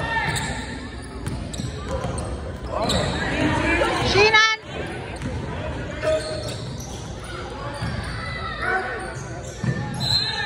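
Basketball game sounds in a gym with a reverberant hall: the ball dribbling on the hardwood floor under a mix of players' and spectators' voices. About four seconds in, one loud shout rising in pitch breaks off suddenly.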